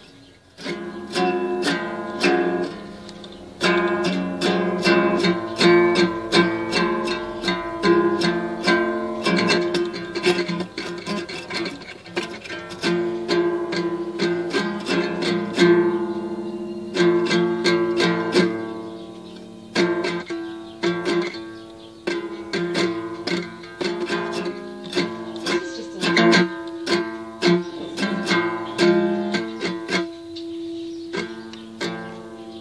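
Small toy-size acoustic guitar strummed rapidly and unevenly, the same open-string chord ringing over and over, with a few brief pauses.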